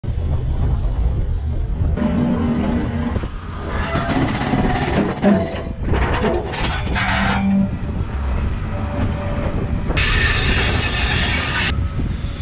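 Excavator engine running steadily under load, with the steel grab's tines scraping and knocking against granite rocks and the steel ball as it closes on it, one sharper knock about five seconds in. A loud hiss from about ten seconds in stops shortly before the end.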